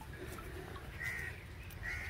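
Faint crow caws: one short caw about a second in and another near the end.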